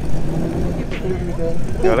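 Air-cooled flat-six of a classic Porsche 911 running at low speed as the car rolls slowly by, a steady low engine note.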